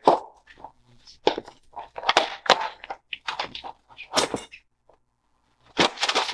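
Clicks and knocks of a hard plastic lockbox case being handled and opened, a quick run of sharp taps from about one to four and a half seconds in, then a louder clatter near the end.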